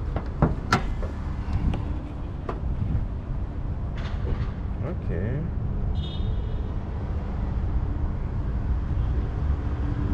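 Clicks and clunks of a Honda Grace's bonnet latch being released and the bonnet lifted, over a steady low rumble. A short high chirp sounds about six seconds in.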